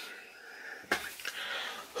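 A man's breath drawn in during a pause in his talking, with a faint click about a second in.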